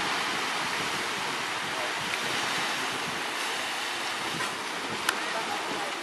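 Small waves washing onto a sandy beach, a steady rush of surf, with a single sharp click about five seconds in.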